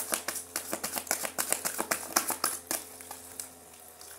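A deck of tarot cards being shuffled by hand, a rapid run of crisp card clicks and flicks that thins out and fades about three seconds in.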